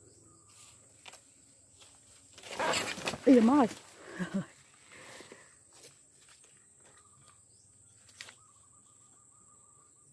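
Rustling of banana leaves and bracts as a long metal pole jostles a banana plant's hanging flower bud to pull it down, with a woman's short startled exclamation about three seconds in. A steady high-pitched insect drone runs underneath.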